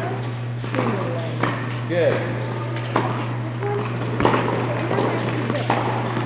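Tennis balls being struck by a racket and bouncing on an indoor court: several sharp pops roughly a second apart, the loudest about four seconds in, over a steady low hum.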